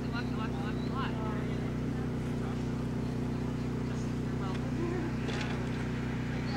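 A steady low hum, with faint distant voices calling briefly in the first second and again about five seconds in.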